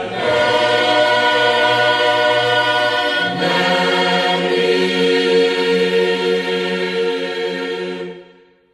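Choir singing slow, long-held chords, the harmony changing just after the start and again about three and a half seconds in.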